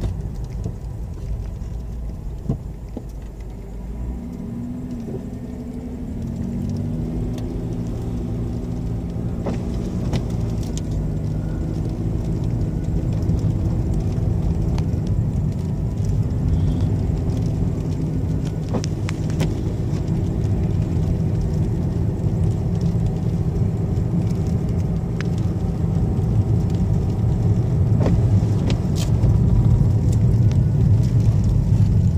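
Car engine and road rumble heard from inside the cabin as the car drives on a snow-covered road. The engine note climbs in pitch from about four seconds in as the car speeds up, then settles into a steady low drone that slowly grows louder, with a few faint clicks.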